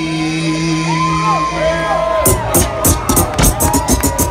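Live hip-hop concert sound through a loud PA: a long held note for the first couple of seconds with whoops from the crowd, then a drum beat with fast hi-hats starts about halfway through.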